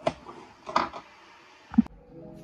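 A short knock, then a brief scrape about a second in, ending in a sharp thump near the end: handling knocks in a small room.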